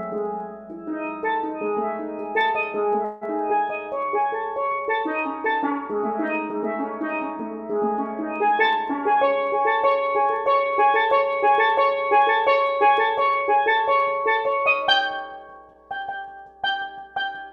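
Solo steel pans played with mallets: quick, ringing struck notes in a busy, flowing pattern that grows denser about halfway through. A loud accented stroke comes near the end, then the notes briefly fall away.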